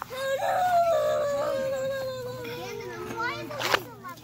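A long, high-pitched whining cry that slowly falls in pitch over about three seconds, followed by a brief rustle near the end.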